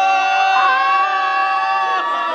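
A voice holding one long, steady high note without words.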